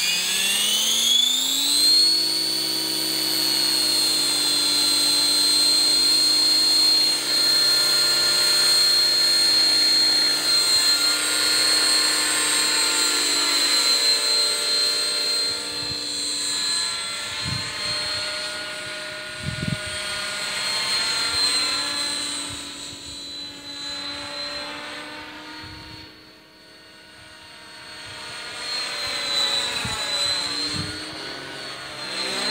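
Outrage Fusion 50 electric RC helicopter with a Scorpion 4025-630kv motor spooling up, its whine rising in pitch over the first two seconds to a steady headspeed held by the governor at about 1,953 rpm. It then flies overhead, the pitch and loudness wavering as it moves, fading about three quarters of the way through and growing louder again near the end.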